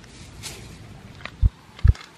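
Two short, dull, low thumps about half a second apart in the second half, over faint rustling of plants being handled.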